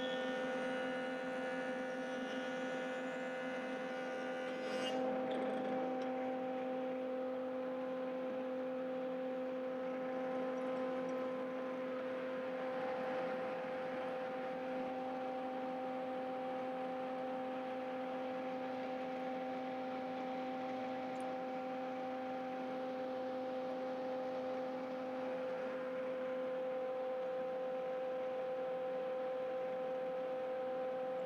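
Stationary thickness planer running with a steady, multi-toned hum. Extra higher tones in the first few seconds stop with a short sharp sound about five seconds in, and the machine then runs on.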